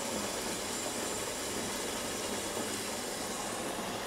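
Whirlpool tub's jet pump running, a steady low hum under water churning in the filled tub.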